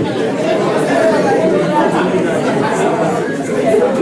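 Congregation members talking to one another all at once: many overlapping voices in a steady chatter.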